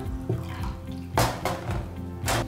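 Water being poured from a plastic bottle into a drinking glass, over background music with held notes. A short rush of noise stands out a little after a second in.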